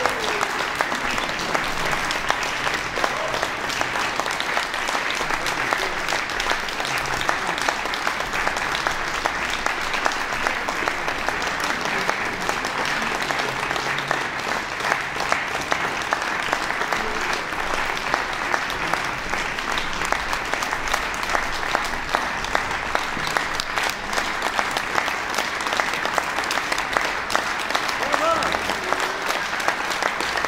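Audience applauding steadily, a dense even clapping, with a few voices calling out in the crowd near the start and near the end.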